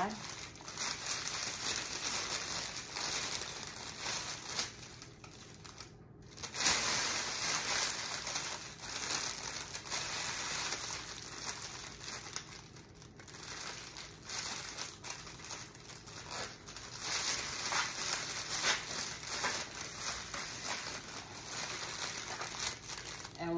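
A clear PVC shrink bag crinkling and rustling in bursts as its top is gathered and cinched with a zip tie.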